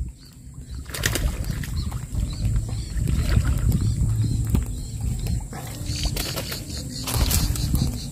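Faint bird chirps over a steady low rumble on the microphone, with a single sharp click about a second in.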